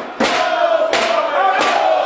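Football crowd chanting in unison on a held, wavering note, with about three loud thuds roughly two-thirds of a second apart.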